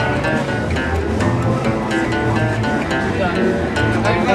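Acoustic guitar being played, with a voice at times over the music.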